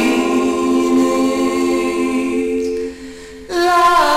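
Doo-wop vocal group singing held harmony notes, the voices stacked in a sustained chord. The sound drops away briefly about three seconds in, and the voices come back in just before the end.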